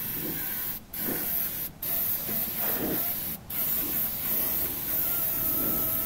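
Gravity-feed air spray gun hissing as it sprays blue paint into a corner of a steel body panel. The hiss breaks off briefly three times as the trigger is let go and pulled again.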